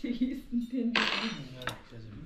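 Cutlery and plates clinking at a dining table: a fork working against a plate and dishes being handled, with a scrape about a second in and a sharp clink near the end.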